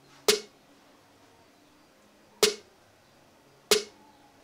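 Programmed drill-beat snare from FL Studio playing on its own: three sharp snare hits, the second about two seconds after the first and the third just over a second later.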